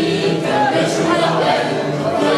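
A group of people singing together from songbooks, many voices at once holding sustained notes in a pub sing-along.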